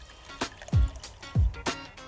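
Water poured from a glass jug into a roasting tin for gravy, under background music.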